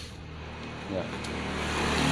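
A motor vehicle's engine and tyres on the road, getting steadily louder as it approaches.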